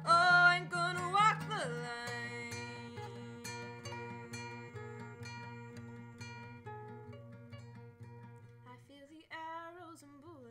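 Capoed nylon-string classical guitar fingerpicked in an instrumental passage: picked chord notes over an evenly repeated bass note. A held sung note falls away in the first two seconds, and wordless singing comes back near the end.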